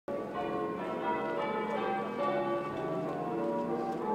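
Church bells ringing, several bells of different pitch struck one after another, their tones ringing on and overlapping.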